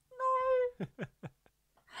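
A cat meowing once: a single steady call lasting about half a second.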